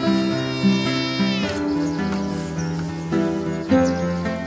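Background music on plucked strings, with a domestic cat meowing once, a long meow that ends about a second and a half in.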